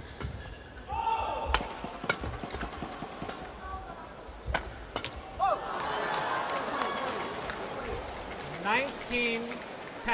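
Badminton rally: sharp cracks of rackets striking the shuttlecock, with court shoes squeaking on the mat. About six seconds in, the point ends and the crowd noise swells before dying down.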